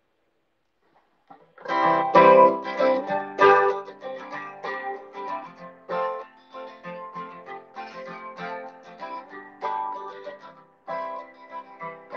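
Acoustic guitar playing the opening of a slow song, beginning about a second and a half in after a moment of silence, with a brief break near the end before the playing continues.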